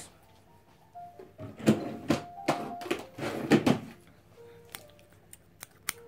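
Handling noises as scissors are fetched: a few knocks and rustles, then a quick series of sharp clicks as the scissors are handled and snapped open and shut. Faint short steady tones sit underneath.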